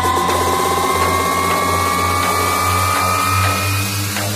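Electronic dance music from a deep house mix: a synth tone rising slowly in pitch over a steady pulsing bass, a build-up that cuts off near the end.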